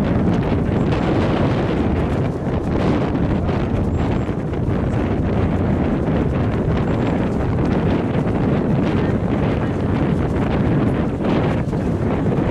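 Steady wind buffeting the camera microphone, a low rumbling rush.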